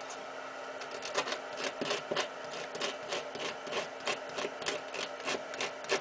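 Hand work with wire and parts at a workbench: a rapid, irregular run of scratchy clicks, about four a second, starting about a second in, over a steady low hum.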